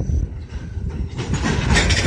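Freight train tank cars rolling past at close range. A steady low rumble of wheels on rail, with clatter and hiss growing louder about a second in.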